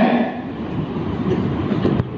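A man's voice trails off at the start, then a steady rumbling background noise fills a pause in the talk.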